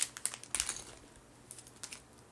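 Light, irregular clicks and crinkles of a small plastic packaging bag and the earrings inside it being handled. The clicks come in a quick cluster at first, go quiet, then return a couple of times near the end.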